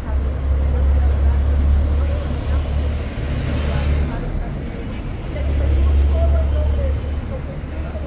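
City street traffic: a low engine rumble from passing vehicles that swells twice, with a voice speaking quietly underneath.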